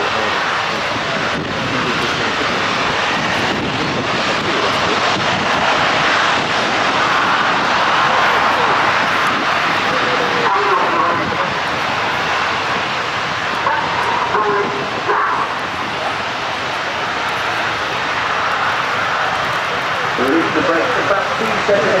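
Jet engines of several BAE Hawk trainers running on the runway ahead of takeoff, a steady even rush of noise. Faint public-address commentary comes in now and then.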